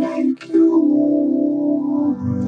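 Vocoded voice from FL Studio's Vocodex plugin: a synthesizer chord played on a MIDI keyboard, shaped by a man's singing into a robotic-sounding voice. The chord is held, with his consonants breaking through briefly about half a second in.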